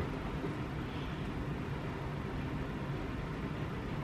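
Steady background noise: an even hiss with a low rumble and no distinct events.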